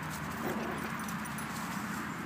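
Yorkshire Terrier puppy giving a short whimper about half a second in, over a steady low background rumble.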